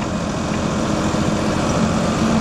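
Tractor engine running steadily under load while pulling a corn planter, heard from inside the cab as a constant hum and rumble, with a low tone growing a little stronger near the end.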